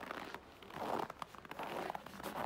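Dry, deeply frozen snow crunching underfoot in a burst of crackly steps, loudest about a second in.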